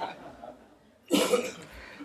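A man coughs once, a short sharp burst about a second in, after some soft breathing.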